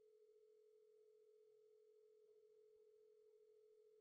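Near silence, with only a very faint steady tone.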